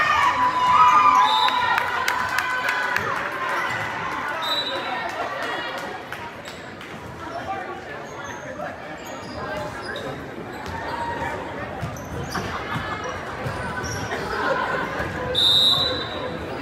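Gym crowd and court sounds during a volleyball match: spectators shouting and cheering loudest in the first few seconds, along with sharp hits of the ball and short squeaks of sneakers on the hardwood floor, all echoing in the hall. The crowd settles to chatter, then rises again briefly near the end with another squeak.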